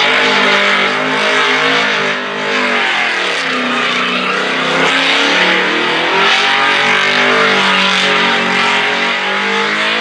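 Chevrolet V8 in a Holden VX Commodore held at high revs during a burnout, the revs rising and falling, with the hiss and squeal of the rear tyres spinning on the pad. There is a brief dip in revs about two seconds in.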